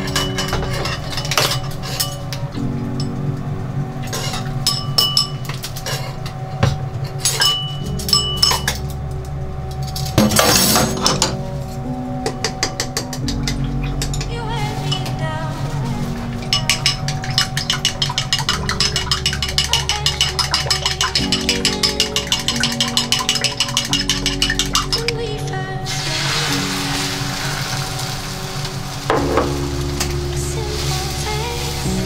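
Background music over wooden chopsticks clinking quickly and regularly against a ceramic bowl as eggs are beaten for tamagoyaki. Near the end the clinking stops and beaten egg sizzles in a hot rectangular tamagoyaki pan.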